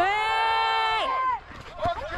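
A person's long drawn-out shout of "ouais!", held for about a second and a half, rising at the start and dropping away at the end. A single sharp click follows shortly after.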